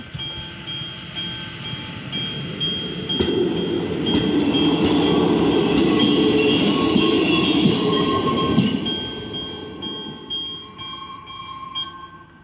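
The classic mechanical bell of an AŽD 71 level-crossing signal rings with evenly repeated strokes while a České dráhy diesel railbus passes over the crossing, loudest midway, with a brief high wheel squeal as it goes by. The bell stops near the end as the warning lights go dark.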